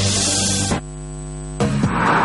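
The end of a TV news-break music sting, swept by a bright noisy whoosh, cuts off under a second in to a steady electrical mains hum, a buzz of many fixed tones, which lasts under a second before louder programme sound cuts back in.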